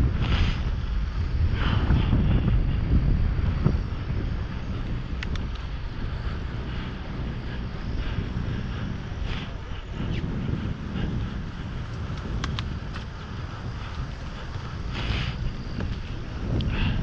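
Wind buffeting an action camera's microphone on a moving bicycle, a steady low rumble with a few faint brief clicks.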